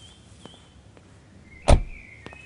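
A Hyundai hatchback's driver door slammed shut once, a single solid thump near the end.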